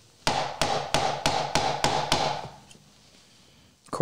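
A mallet striking a chisel to chop into a pine board: about seven sharp blows at roughly three a second, each with a short ring, then the blows stop about halfway through.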